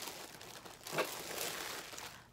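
Clear plastic packaging bag crinkling and rustling as a dress is pulled out of it, with a brief louder rustle about halfway through.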